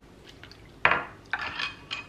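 Kitchen utensils knocking against a glass mixing bowl: one sharp knock a little under a second in, then a short clatter and scrape, and a small click near the end.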